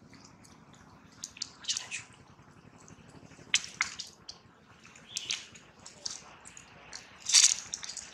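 Baby monkey sucking milk from a feeding bottle: short wet sucking and slurping sounds at irregular intervals, loudest near the end.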